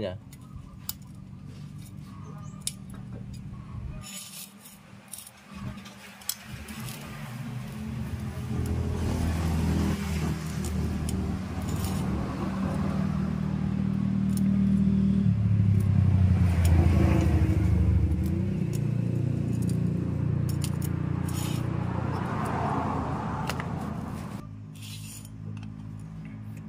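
Light metallic clinks and taps as a scooter's centrifugal clutch assembly is handled and taken apart. An engine running nearby grows louder through the middle, becomes the loudest sound, and fades near the end.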